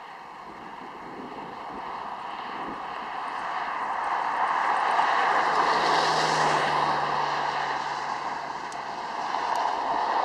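Rushing vehicle noise that swells to a peak about halfway through, with a low engine hum under it, then eases and rises again near the end.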